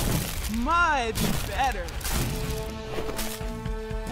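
Cartoon dinosaur characters caught in vines give two short vocal cries that rise and fall in pitch, about half a second and a second and a half in. Background music with long held notes follows in the second half.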